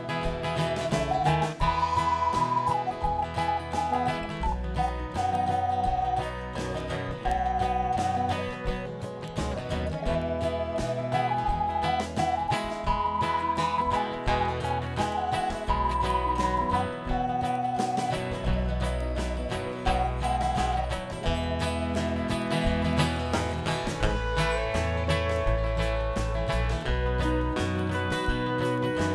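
Live country-rock band playing an instrumental break with no singing: acoustic guitar, electric bass, drums and organ over a steady beat, with a lead line of long held notes on top.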